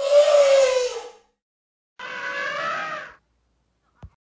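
Elephant trumpeting twice: a loud, harsh call about a second long whose pitch slides slightly down, then a second, slightly quieter call starting about two seconds in.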